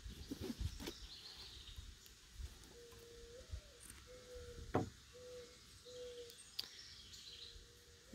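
Quiet outdoor background with a faint bird calling in a series of short, level-pitched notes. There are a few small clicks, with one sharp click a little past halfway.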